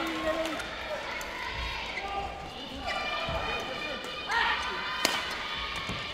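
Voices and shouts from players and courtside team-mates in a badminton hall between rallies, with one sharp knock about five seconds in.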